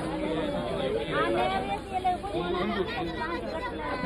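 Several people talking over one another: crowd chatter.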